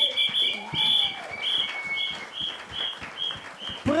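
A run of short, high-pitched chirping notes, about three a second, two pitches together at first and then one, fading towards the end.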